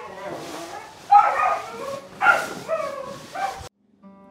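A person's voice in three short, high-pitched outbursts without words, cutting off suddenly shortly before the end.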